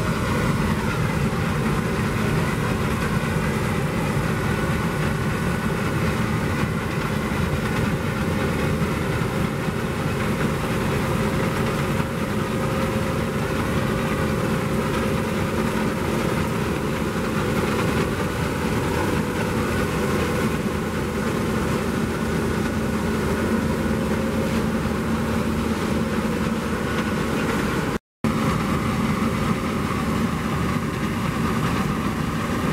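New Holland CR9.90 combine harvester running steadily under load while harvesting rice. Its engine and threshing machinery make one continuous mechanical sound, which cuts out for a moment near the end.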